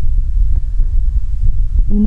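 A loud, uneven low hum with a throbbing quality, with a few faint ticks over it; the voice picks up again at the very end.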